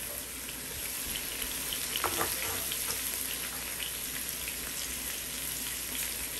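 Chopped onion and tomato sizzling in hot olive oil in a pot on the stove: a steady frying hiss with fine crackles, the first stage of cooking down a tomato sauce base. There is a brief clatter about two seconds in.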